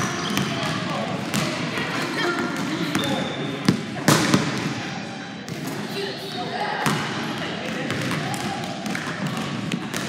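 Basketballs bouncing on a hardwood gym floor, several sharp bounces standing out, amid echoing voices and chatter in a large gym.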